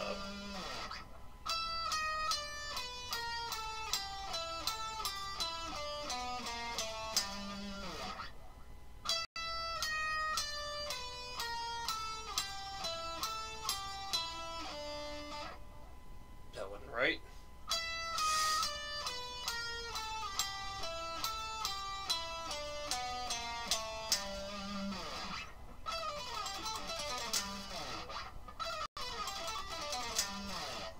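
Electric guitar playing a fast single-note exercise, alternate picked: quick chromatic runs and back-and-forth phrases that step up and down the neck, with a sliding pitch glide about halfway through.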